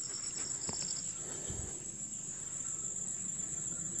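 A steady, high-pitched chorus of crickets trilling without a break.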